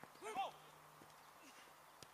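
A short shout from a distant player about a quarter second in, its pitch rising and falling, followed by faint open-air background with a low steady hum.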